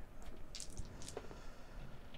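Two six-sided dice and an eight-sided die thrown onto a tabletop gaming mat, a faint, soft clatter about half a second to a second in.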